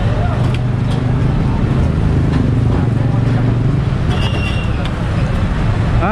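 A truck engine idling with a steady low rumble, amid street traffic noise and background voices.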